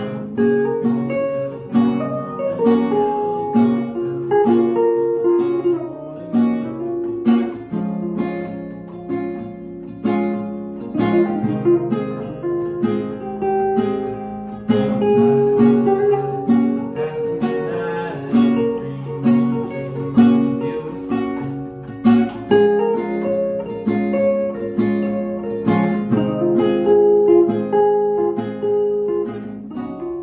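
An electric guitar through a small amp and a nylon-string classical guitar playing together in an instrumental passage, with strummed chords and picked notes.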